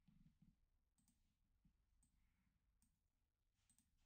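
Near silence: room tone with a few very faint, brief clicks.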